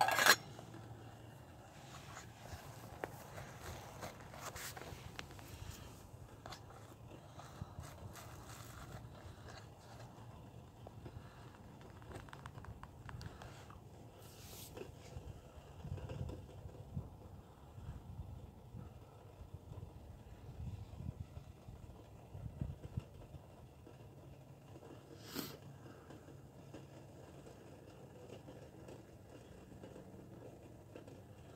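A metal lid clanks onto a stainless steel canteen cup right at the start. After that there is only a faint steady background with a few light ticks and soft low rumbles, and one sharp click near the end.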